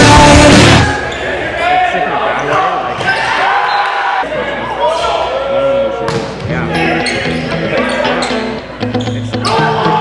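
Rock music cuts off about a second in, giving way to the live sound of an indoor volleyball rally in a gym. Sneakers squeak on the court, players call out, and the ball is struck with sharp smacks.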